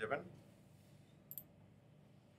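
A single short, sharp click of a computer mouse button a little past halfway, against faint room tone.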